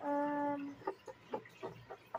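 A child's voice holding one steady, level-pitched note for under a second, a wordless character noise. Then about five light clicks of plastic Lego bricks being handled and set down on a wooden table.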